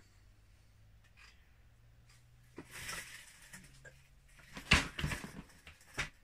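Loose Lego bricks clattering and rattling as a hand rummages through a plastic storage tub of pieces, with a loud burst of clicking clatter a little under five seconds in.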